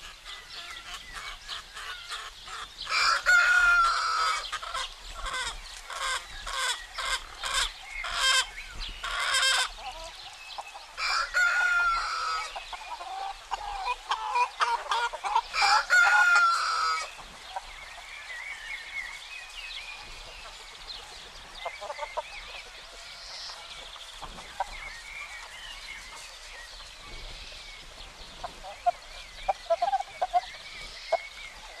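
Chickens: a rooster crowing three loud times in the first half, with hens clucking in quick runs between the crows. Softer clucking and calls follow in the second half.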